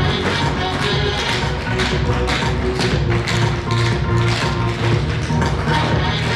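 Tap shoes striking a wooden stage floor, a group of dancers tapping rapid rhythms together over recorded backing music.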